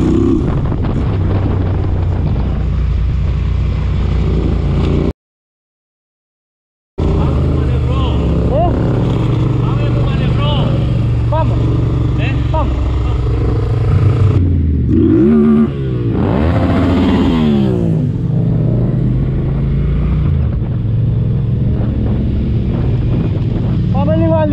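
Motorcycle engine running under way, with a full dropout to silence about five seconds in. About fifteen seconds in, the engine note climbs as it revs up, then settles back.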